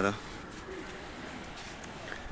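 A man's voice stops just after the start, then a bird cooing faintly over steady background noise.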